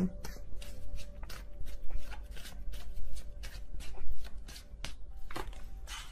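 A deck of oracle cards being shuffled by hand: a run of quick, irregular card clicks.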